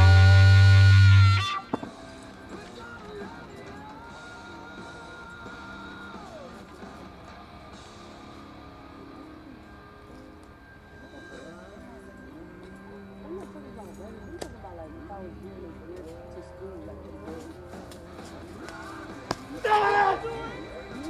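Rock-style guitar music plays loudly and cuts off about a second and a half in. Then comes a quiet outdoor background with faint distant voices, and near the end one short loud yell from the hammer thrower as he spins to release the hammer.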